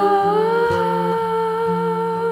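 Folk song: a single voice holds one long wordless note, hummed or sung without words, over plucked acoustic guitar notes changing about once a second.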